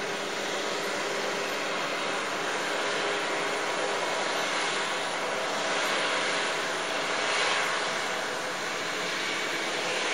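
Combine harvester and tractor with grain cart running at a distance: a steady mechanical drone, swelling slightly about seven seconds in.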